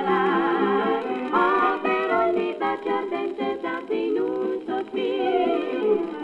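1942 78-rpm recording of a swing fox-trot: a dance orchestra playing with a female close-harmony vocal trio, notes moving quickly, with some long wavering held tones.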